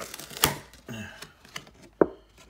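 Stiff cardboard of a Pokémon Elite Trainer Box clicking and tapping as its sleeve comes off and the folded inner card panel is pulled out and opened. A sharp snap about half a second in is the loudest, followed by a few lighter clicks.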